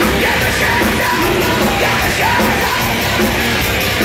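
Live industrial metal band playing loudly: distorted electric guitars, bass and a steady driving drum beat, with shouted vocals over it, recorded from the crowd.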